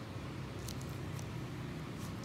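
Steady low background hum, with a few faint clicks a little over half a second to about a second in.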